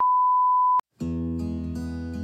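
Steady 1 kHz test tone played with colour bars, lasting just under a second and ending with a click. After a brief silence, guitar-backed intro music begins about a second in.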